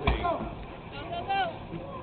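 Faint voices of onlookers talking, with a single thump right at the start.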